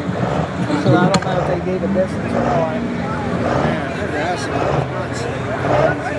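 Indistinct talking over the steady idle of a Ford Super Duty pickup waiting at the line, hooked to the pulling sled.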